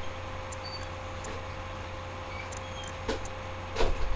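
Steady low hum with a faint steady higher tone, broken by two short knocks a little after three seconds in, the second louder.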